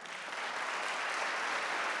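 Audience applauding, the clapping building over the first half second and then holding steady.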